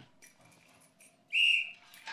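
A single short blast on a hand whistle, one steady high note, blown to summon a servant.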